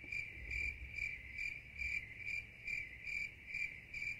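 Cricket-chirp sound effect: a high, steady chirping that pulses about three times a second, cutting in and out abruptly. It is the stock crickets cue laid over a frozen frame as a comic awkward-silence gag.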